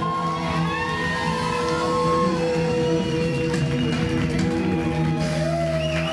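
A live rock band playing amplified music, with electric guitar holding long, slightly bending notes over bass and drums.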